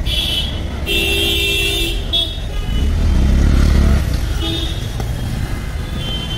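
Street traffic: vehicle horns honking twice in the first two seconds, the second a longer toot, then the low rumble of a vehicle engine passing about three to four seconds in, over steady road noise.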